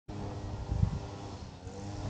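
Honda XR 200's single-cylinder four-stroke engine idling steadily with the bike at a standstill, with one brief low bump just under a second in.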